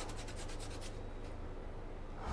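A paintbrush scrubbing paint onto a canvas in quick, short, even strokes. It stops about a second in, leaving faint room noise.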